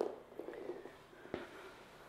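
Faint shuffling of a person getting down onto a wooden floor, with a soft knock about halfway through.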